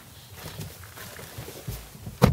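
Faint shuffling and rustling of a person stepping in and settling into a car's driver's seat through the open door, with a soft low thump near the end.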